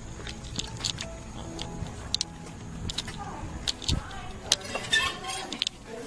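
Handling noise of a handheld camera being carried while walking, with scattered light clicks, taps and clinks of carried belongings and a low rumble throughout.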